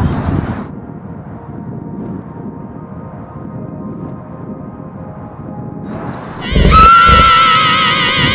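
A faint steady drone, then about six and a half seconds in a heavy thud and a loud, shrill, wavering cry that carries on to the end.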